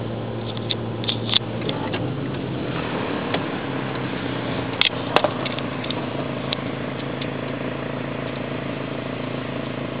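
Car running at low speed, its engine and tyre noise a steady hum heard from inside the cabin. A couple of sharp clicks come about five seconds in.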